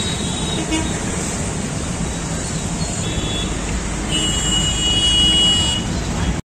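Roadside traffic noise, a steady rumble of passing vehicles. A vehicle horn toots briefly about three seconds in, then sounds for about two seconds near the end.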